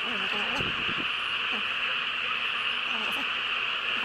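A steady, shrill insect drone, with faint voices in the background near the start.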